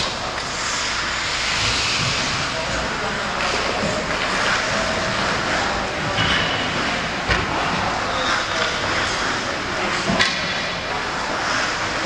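Ice hockey warmup ambience: a steady hiss of skates scraping the ice, broken by a few sharp knocks of pucks and sticks, with indistinct players' voices in the background.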